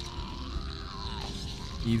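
Faint anime soundtrack: a low steady rumble with quiet, held music tones over it.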